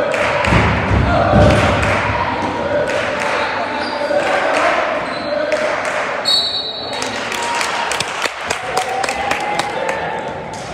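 A basketball bouncing on a gym floor during play, with voices calling out across the court, all echoing in a large hall. Heavy thumps come in the first couple of seconds, and a run of quick sharp bounces near the end.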